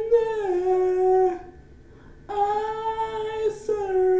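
A woman singing unaccompanied in long, drawn-out notes: one held note slides down and ends about a second and a half in, then after a short pause another long note is held to the end.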